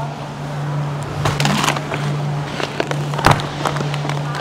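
Handling noise as a bag of frozen chicken wings is pulled from a freezer case: a run of rustles and clicks, then one sharp knock about three seconds in, over a steady low hum.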